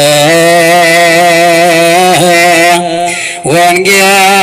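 Ethiopian Orthodox zema chant of the misbak, the psalm verse sung before the Gospel: long held, melismatic notes with a slight waver in pitch, with a brief dip about three seconds in before the chant resumes.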